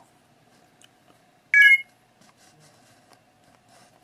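A single short, high electronic beep about a second and a half in, over a faint steady hum.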